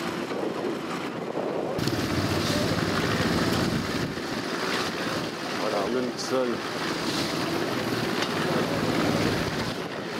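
Wind buffeting the microphone outdoors, a rushing rumble over the murmur of a gathered crowd's voices, with a few spoken words standing out about six seconds in.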